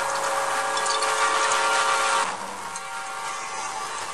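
A steady hissing noise with several held tones running through it, louder for about two seconds and then dropping to a softer hiss.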